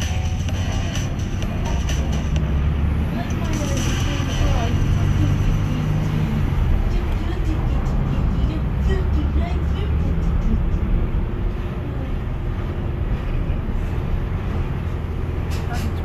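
Steady low rumble of a car's engine and tyres heard from inside the cabin while driving in traffic, with music playing over it.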